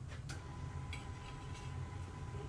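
A few light clicks and taps as a piece of steel angle iron is handled and set on a wooden block, over a steady low hum.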